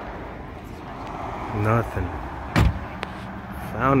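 A single loud knock from the car being searched, about two and a half seconds in, with a smaller click just after, over a steady low hum; short bits of voices come before it and near the end.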